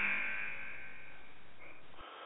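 Show timer cue marking that the one-minute limit for answering a question has passed: a single ringing musical tone, rich in overtones, fading slowly away.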